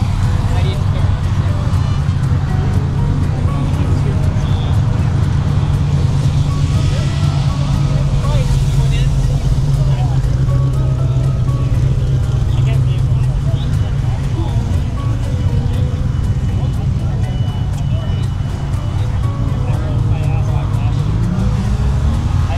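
A car engine idling steadily with a deep, low hum, rising in pitch near the end, over faint music and voices.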